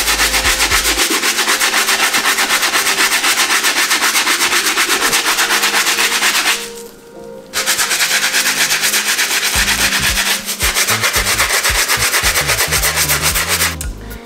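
Stiff-bristle brush scrubbing the rubber outsole and midsole of a lathered sneaker in rapid, continuous back-and-forth strokes. There is a short pause about seven seconds in.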